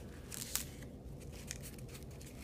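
Faint rustling and crinkling of masking tape and cardboard being pressed and smoothed around a frame corner by hand, in a few short bursts, the sharpest about half a second in.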